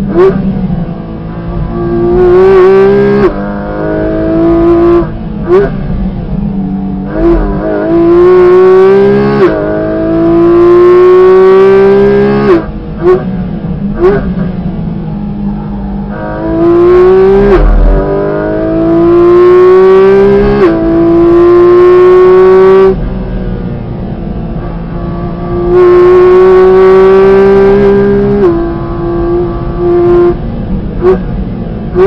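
Porsche 718 Cayman GT4 RS's naturally aspirated 4.0-litre flat-six under hard acceleration, heard from inside the cabin. Its pitch climbs through each gear and drops sharply at quick PDK upshifts, several times over. Between the pulls come quieter lift-off stretches with short throttle blips on the downshifts.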